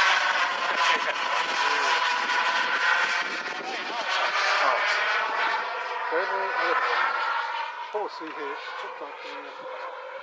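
Radio-controlled model MiG-29 jet flying overhead: a steady, many-toned high whine whose pitch slowly wavers as it passes, growing fainter over the last few seconds.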